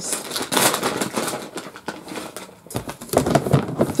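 Crinkling and rustling with many light clicks and knocks from plastic being handled: plastic bags and a clear plastic bin full of canned cat food.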